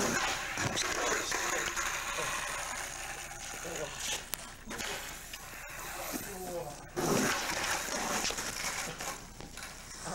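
Young men's voices and laughter without clear words, over steady camcorder tape hiss, with a skateboard knocking and rolling on concrete.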